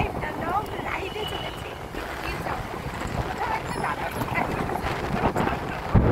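Wind buffeting the microphone and a steady road rumble from riding on a motorbike, with a woman talking over it.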